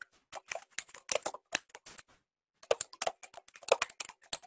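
Typing on a computer keyboard: a quick run of keystrokes, a short pause about two seconds in, then a second run of keystrokes.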